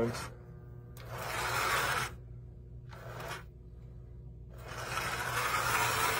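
A 1935 Mi-Loco K5 O-scale toy steam locomotive running under power on outside-third-rail track: its open-frame electric motor and cast-iron drivers run up loudly about a second in and again near the end, with a quieter stretch between. A steady low electrical hum lies underneath.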